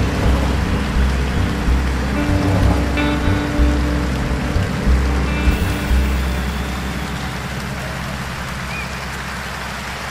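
Jazz quartet of piano, electric guitar, upright bass and drums playing the closing bars of a tune, with strong bass notes. About six seconds in the band settles on a final long low note that slowly fades while a noisy haze of audience applause comes up.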